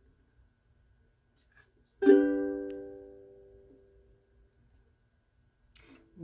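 A ukulele strummed once on a G chord about two seconds in, the chord ringing and fading away over about two seconds. A small click comes near the end.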